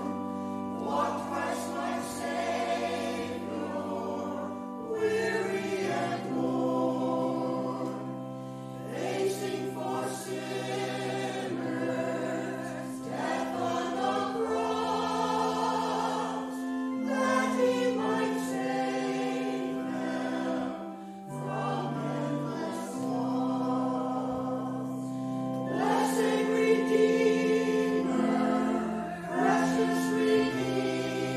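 Church choir singing a hymn or anthem in parts over long, held low accompanying notes that change every few seconds.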